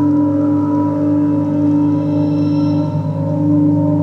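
Ambient electronic drone: several sustained low tones held steady and layered together, with faint high ringing tones joining in the middle.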